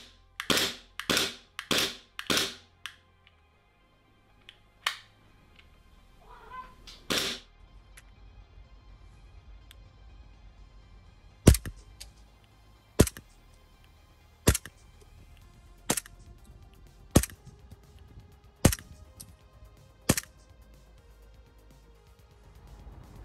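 WE G17 gas blowback airsoft pistol: five quick clicks as its trigger is worked in the first few seconds. About halfway in come seven single shots about one and a half seconds apart, each a sharp crack as the slide blows back, the first the loudest.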